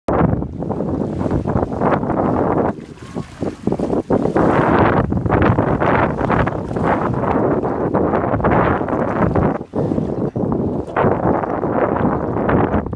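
Wind buffeting a phone microphone in loud, uneven gusts, with a brief lull about three seconds in. Under it is the splashing of feet wading through shallow water.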